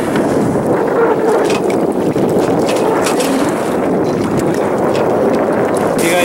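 Steady noise of a boat underway: its motor running with a faint wavering hum, and wind buffeting the microphone.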